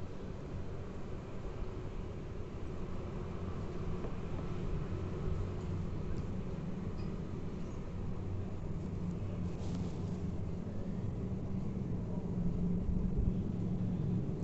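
Steady low rumble with a faint hum in a home kitchen, growing slightly louder near the end.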